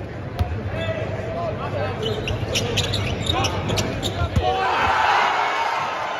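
Basketball thumping on the hardwood court, with two sharp bounces standing out, over a steady babble of arena crowd voices. Short high squeaks come in the middle, and the crowd noise swells about four and a half seconds in as the shot goes up.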